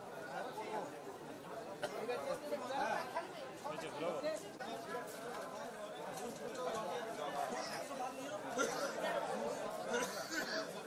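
Several people talking at once, a steady babble of overlapping voices with no single speaker standing out.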